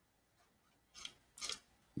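Faint clicks of a computer mouse: one about a second in, then a quick few about half a second later.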